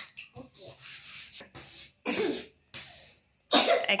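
Chalk scratching on a chalkboard in several short strokes as a capital H is written, with a louder cough-like voice burst near the end.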